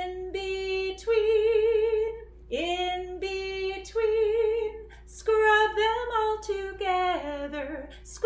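A woman singing a simple children's handwashing song unaccompanied, in short phrases with a slight vibrato on the held notes: the lines 'In between, in between, scrub them all together, scrub them all together'.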